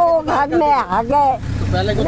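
People talking, with a low rumble of road traffic underneath that swells in the second half.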